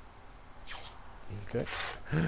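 Green masking tape being pulled off the roll, two short tearing rasps.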